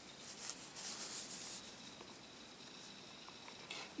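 Faint rustling of a printed paper sheet being handled and shifted, in a few soft bursts during the first second and a half, then fainter.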